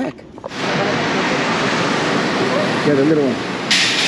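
A loud, steady rushing noise, like blowing air, that starts about half a second in, with a short brighter hiss near the end.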